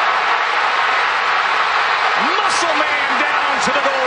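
Loud, steady stadium crowd cheering through a long touchdown run on a televised football broadcast. A commentator's voice rises over the crowd about halfway through.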